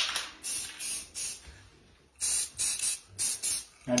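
Aerosol spray paint can sprayed onto water in short hissing bursts: two bursts, a pause of about a second, then several quick bursts in a row.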